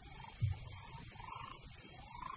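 Faint animal calls, a short rising-and-falling call repeated about once a second, over a steady high thin whine, like a night-ambience sound effect.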